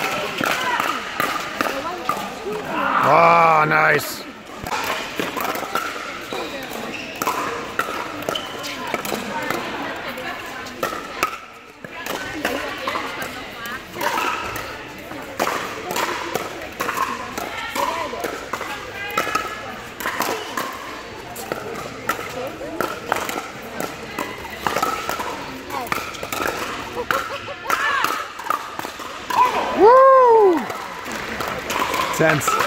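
Pickleball paddles hitting the hard plastic ball and the ball bouncing on the court, short sharp pops scattered through the rallies, over steady chatter and calls from players in a large indoor court hall. A loud pitched shout about three seconds in is the loudest sound.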